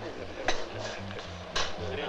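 Cups and saucers clinking on a café table: two sharp clinks about a second apart. Soft background music with a low bass line plays under them.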